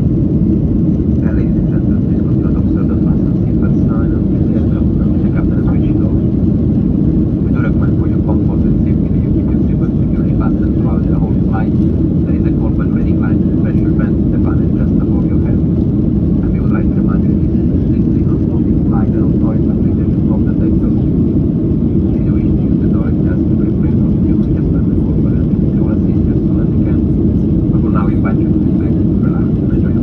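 Steady low noise inside a jet airliner's cabin, engines and airflow, as the plane climbs after takeoff, with faint voices of other passengers scattered through it.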